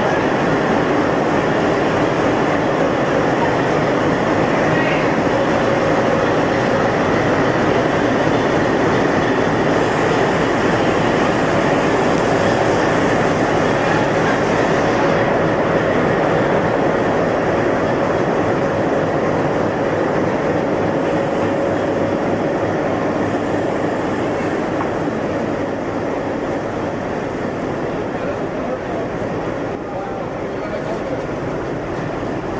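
A WDM-3A diesel locomotive's ALCO-design 16-cylinder engine running steadily close by, a loud continuous drone with a faint steady whine, growing a little quieter in the last few seconds.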